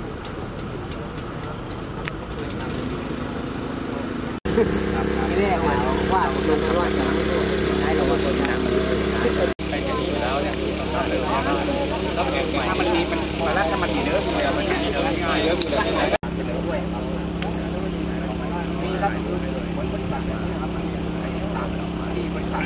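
An engine running steadily with a constant low hum, under indistinct talk from several people. The hum grows louder about four seconds in and cuts off abruptly for an instant a few times.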